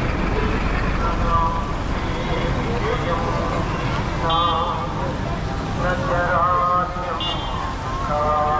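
Busy street ambience: people talking nearby over a steady low rumble of road traffic.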